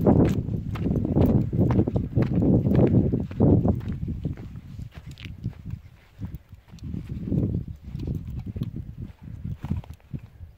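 Footsteps crunching and scuffing on a loose stony path, loud for the first few seconds, then softer and sparser once the ground turns to grass.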